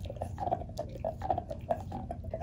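A dog gnawing on a large bone held between its paws, its teeth scraping and clicking against the bone in an irregular run of short crunches.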